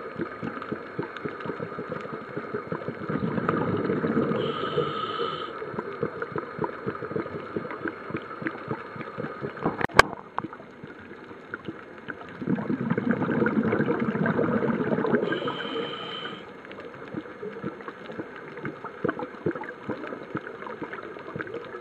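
Underwater recording of a scuba diver's breathing through a regulator: twice, a swell of bubbling rumble as the diver exhales, each followed by a short whistling hiss of inhalation. A fine, steady crackling runs underneath, with one sharp click about halfway through.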